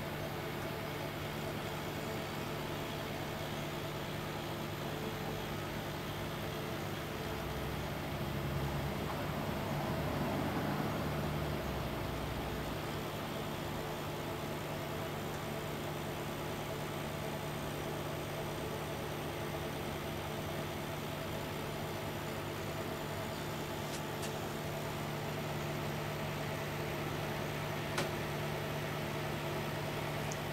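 Small geared motors of an Orion TeleTrack alt/az mount whirring steadily as the mount slews to its first target point, growing louder for a few seconds about a third of the way through. A single click comes near the end.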